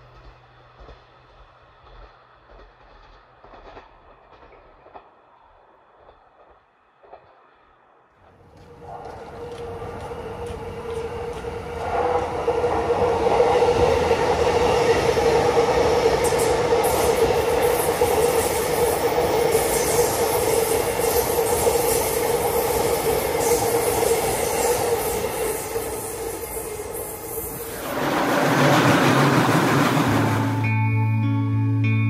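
Chuo Line E233 series electric commuter train running past at close range: a loud, steady rumble of wheels on rails with a constant whine, starting abruptly about eight seconds in after a faint, quiet opening, building up a few seconds later and swelling again near the end as a train passes right beside the microphone.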